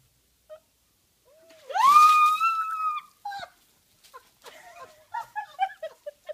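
A woman screams as a bucket of ice water is tipped over her: one long high scream that rises and then holds for about a second, starting about two seconds in over the rush of the water. It is followed by short, breathless gasps and yelps from the cold.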